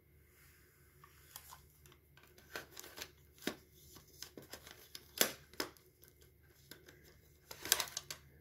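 Faint, scattered clicks and light rattles of plastic cassette cases being handled and set down, with a few sharper clicks in the middle and a quick run of them near the end.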